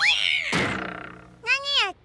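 A cartoon cat's voice cries out, falling in pitch, as she jumps, and a thud follows about half a second in as she lands on the ground, fading over the next second. A young voice starts to speak near the end.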